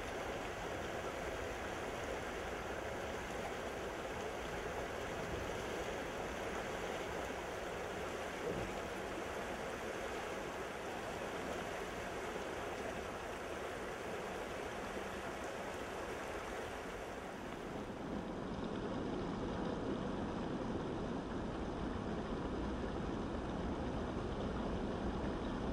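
River water rushing and splashing over rocks in a steady flow. Near the end it becomes a slightly louder, deeper rush.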